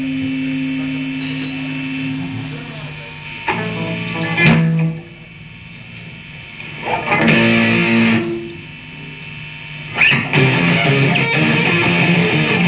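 Distorted electric guitar chords from a lo-fi hardcore punk demo: a held chord dies away, two separate stabbed chords ring out with near-quiet gaps between them, then the full band comes in about ten seconds in.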